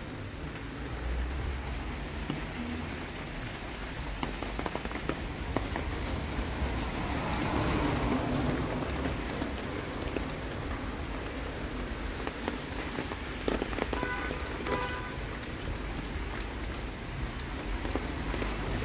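Steady rain falling on a wet city street, with many sharp drop taps on an umbrella held overhead. The noise swells louder about halfway through.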